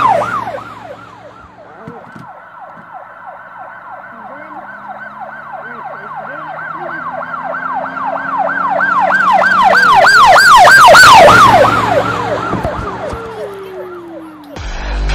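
Emergency vehicle siren in a fast rising-and-falling yelp, about four cycles a second. It grows louder to a peak near the ten-second mark, then drops in pitch and fades as it passes by.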